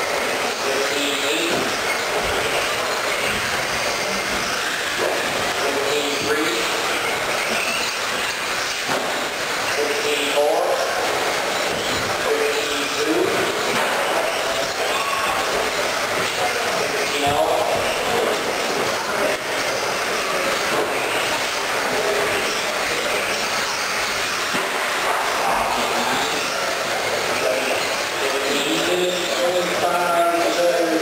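Electric R/C stadium trucks racing on an indoor dirt track: steady whirring of their electric motors and drivetrains and tires on dirt, with voices in the hall underneath.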